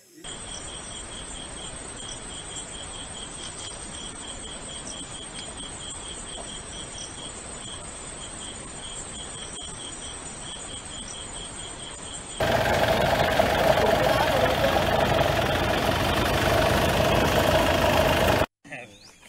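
Crickets or other night insects chirping steadily, a high, regular pulsing call over a soft hiss. About twelve seconds in it cuts abruptly to a much louder steady rushing noise.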